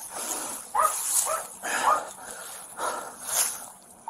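A dog barking several times in short, sharp bursts.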